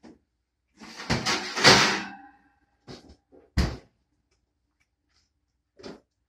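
Oven door opened with a rattle and a brief squeak, then a sharp thunk about three and a half seconds in as it shuts, with a few small clicks around it.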